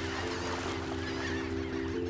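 A sustained low chord of background music, held steady, under the busy calling of a flock of birds.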